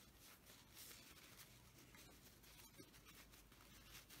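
Near silence, with faint rustling and scratching of cotton fabric being pulled through a small opening as a quilted pocket is turned right side out.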